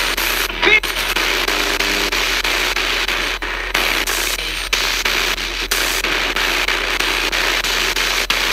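Spirit box sweeping through radio stations: a loud, continuous hiss of static, chopped by short dropouts every fraction of a second to a second, with brief snatches of sound breaking through.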